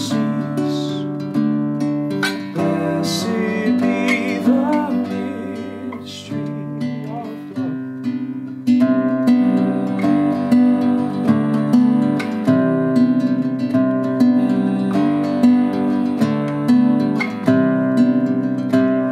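Nylon-string classical guitar played alone, plucking an instrumental passage of chords. A few squeaks of fingers sliding along the strings come in the first few seconds, and the playing grows louder and more even about halfway through.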